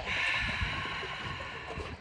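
A long, breathy exhale out through the open mouth, like fogging up a mirror: a deliberate yoga breathing exercise. It fades out over about two seconds.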